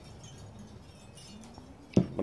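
Quiet background, then near the end a single sharp knock as a drinking glass is set down on a wooden table.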